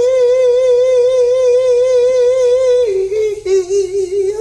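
A solo male voice in a cappella gospel singing, holding one long note with a steady vibrato for nearly three seconds, then stepping down to a lower note, also with vibrato.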